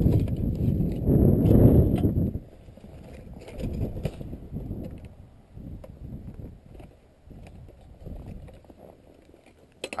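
Footsteps crunching in snow, roughly one a second, while a ladder is carried. The first two seconds or so are covered by a loud, low rumbling noise on the microphone.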